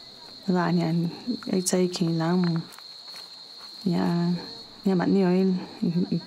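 A woman speaking in short phrases, over a steady high-pitched buzz of insects that goes on under and between her words.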